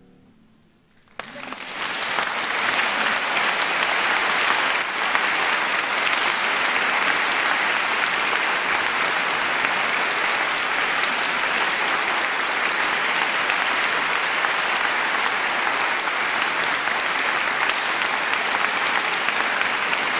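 Concert hall audience applauding. The clapping breaks out suddenly about a second in, after the last note has died away, then continues steadily as a dense wash.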